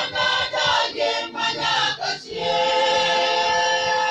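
Church choir singing unaccompanied in harmony: short sung phrases, then from a little over two seconds in one long held closing chord.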